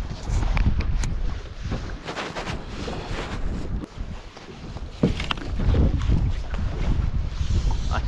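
Wind buffeting the microphone in a low, uneven rumble, with scattered rustles and light knocks from fly line and rod being handled.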